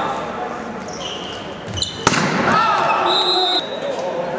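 Volleyball rally in a reverberant sports hall: high squeaks of shoes on the court, a sharp hard hit on the ball about two seconds in that ends the point, then players' shouts.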